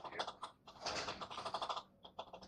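A voice talking, pitch-lowered so it sounds deep, in two stretches with a short pause about half a second in.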